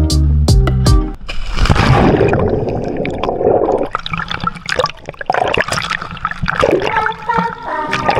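Background music with a beat, cut about a second in by a splash as a snorkeler in fins drops from a boat into the sea. A few seconds of water rushing and bubbling close up follow, and the music comes back near the end.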